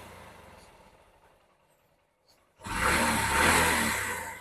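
Honda SP 125 single-cylinder motorcycle engine revved with the throttle: the previous rev dies away in the first second, and after a gap another rev swells and falls off about three seconds in. The bike is running after its starting problem, which was put down to water mixed into the fuel.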